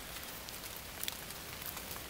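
Light steady rain falling, with a couple of separate drop ticks about a second in.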